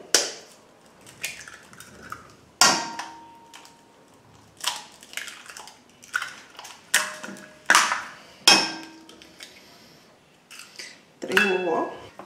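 Eggs cracked against the rim of an enamel bowl: about six sharp taps spread out, several ringing briefly, with shells pulled apart in between.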